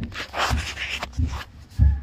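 Rustling handling noise as a phone camera is moved in close to a drywall surface, with a dull thump near the end.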